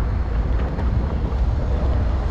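Wind buffeting a helmet-mounted microphone while riding an electric scooter at speed: a steady deep rumble of rushing air.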